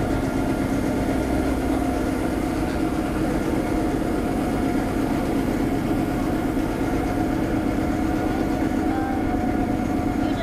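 Driverless street sweeper running as it drives along the road with its two side brushes sweeping the pavement: a steady mechanical hum with several constant tones over it.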